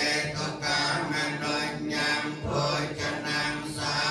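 A group of voices reciting a Khmer Buddhist chant together in a steady, even-pitched recitation, with brief breaks between phrases.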